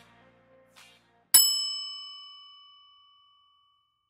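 A single bright bell ding, a notification-bell sound effect, struck once about a second and a half in and ringing out in several clear tones that fade away over about two seconds.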